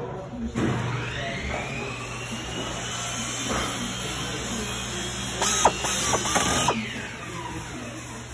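Handheld power screwdriver driving screws into a metal frame: its motor whine rises to speed, runs steadily, then winds down near the end. A short louder run of clicks comes a little past halfway.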